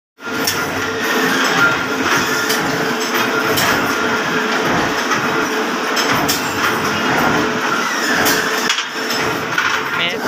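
Steady workshop din with a constant hum, broken by irregular sharp metallic clanks as steel rods are handled and knocked together.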